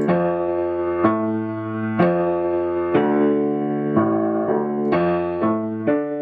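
Grand piano playing a D minor arpeggio in second inversion with both hands, the notes ringing on into one another. New notes come in about once a second, then about twice a second near the end.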